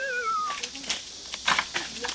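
A warbling comic sound effect slides down in pitch and ends about half a second in. A few sharp cracks follow as the thin, soft tip of a wooden walnut-knocking pole is twisted and bent by hand to snap it off.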